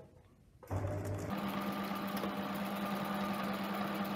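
Electric Pfaff sewing machine stitching through lining fabric: it starts about two-thirds of a second in at a lower speed, then about half a second later picks up to a higher, steady sewing speed.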